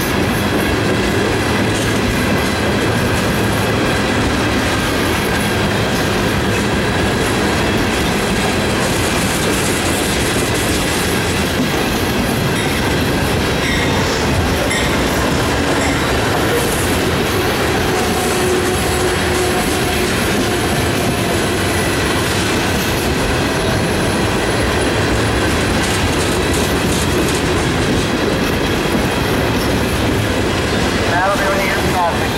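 CSX freight train of Tropicana refrigerated boxcars rolling steadily past: continuous loud rumble and clatter of steel wheels on rail, with a faint steady high whine above it.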